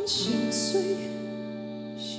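Live slow pop ballad: a male singer's voice carrying a wavering, held line over a soft guitar accompaniment.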